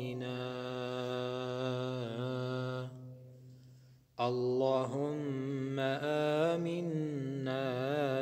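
A man's voice chanting an Arabic supplication in long, drawn-out melodic notes with slow wavering ornaments. The voice fades away a little before halfway and comes back strongly about a second later.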